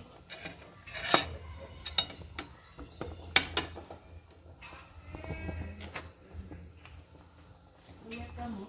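A metal spoon or ladle knocking and clinking against an aluminium stock pot and a frying pan, a few separate sharp knocks, the loudest about a second in and again a little past three seconds. A brief pitched call, like a bleat, comes about five seconds in.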